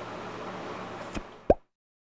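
Faint room hiss with a small click, then a short, sharp pop that rises in pitch about one and a half seconds in, after which the sound cuts off to dead silence.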